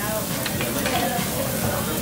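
Thin slices of marbled beef sizzling steadily on a tabletop Japanese barbecue grill's mesh grate.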